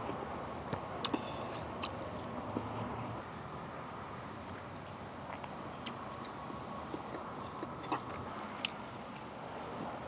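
A person eating soup close to a clip-on microphone: sipping broth from a soup spoon and chewing, with a few short light clicks of the spoon and chopsticks against the bowl, over steady background noise.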